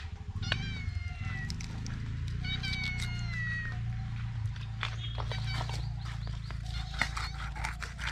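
A cat meowing twice, each call a little over a second long and falling in pitch. Light clicks and taps from the knife and fish being handled on a wooden block run alongside.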